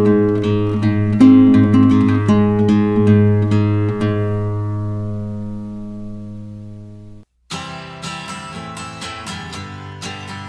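Background music of acoustic guitar: plucked notes ring out and fade away, a brief silence falls about seven seconds in, and then another guitar piece starts.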